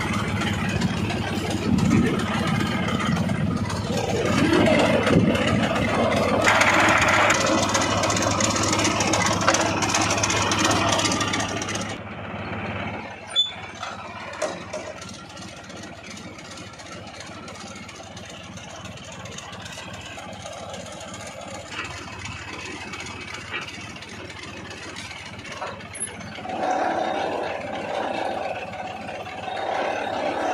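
Engine of a tractor-mounted borewell pipe-lifting rig running, loud for the first twelve seconds, then much quieter, with a few sharp knocks just after the drop and the engine coming up again near the end.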